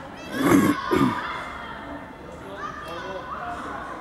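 Children calling and shouting to each other across an open football pitch, with two louder calls close together about half a second in.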